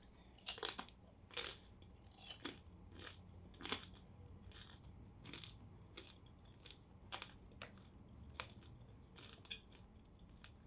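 A person chewing crunchy food close to the microphone: irregular crisp crunches about one or two a second, the loudest in the first few seconds and fainter after.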